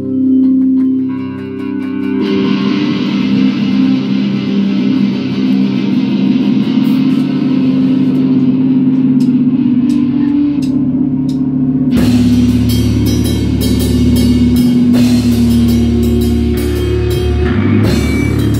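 Rock band rehearsing: electric guitars play chords, growing fuller and distorted about two seconds in, and about twelve seconds in the drum kit joins with the bass for the full band.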